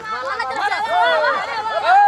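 Speech only: several people talking over one another in indistinct chatter.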